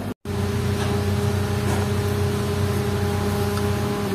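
A steady machine hum with a low, unchanging pitch, starting right after a brief dropout at the very start.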